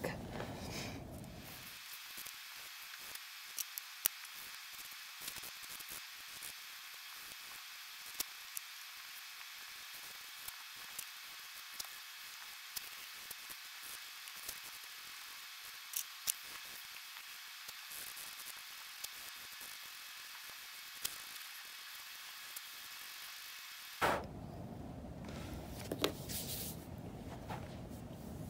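Faint, scratchy hiss of a 100/180 grit emery nail file being worked back and forth across hardened dip-powder nails, with scattered light ticks.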